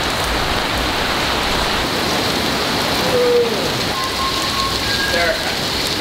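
Steady rain falling and splashing on hard wet surfaces.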